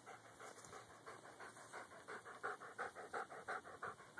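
Goldendoodle panting with its mouth open: a quick, even run of breaths that grows louder in the second half.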